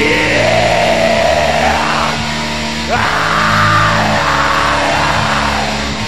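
Black metal song playing: distorted guitars and bass under harsh screamed vocals, in two long phrases, the first in the opening two seconds and the second from about three seconds in until near the end.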